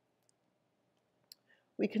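Near silence with a few faint, short clicks, then a woman's narrating voice begins near the end.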